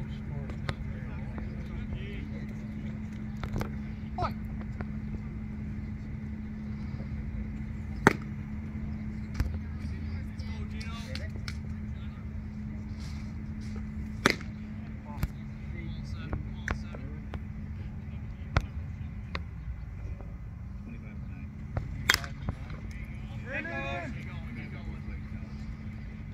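Outdoor ballfield ambience with a steady low hum, broken by a few sharp pops; the one about fourteen seconds in is a pitched baseball smacking into the catcher's mitt. Faint voices come and go in the background.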